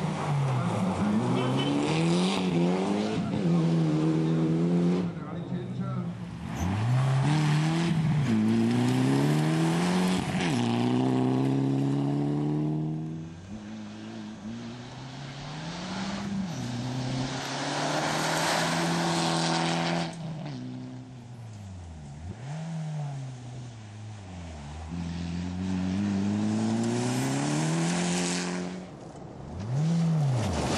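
Mitsubishi Lancer Evolution rally car engine revving hard through the gears: its pitch climbs and drops sharply at each gear change, again and again. It grows louder and fainter as the car comes near and moves away through the corners.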